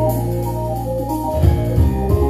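Electronic keyboard played live with an organ sound, holding chords; about one and a half seconds in, a pulsing low bass part comes in.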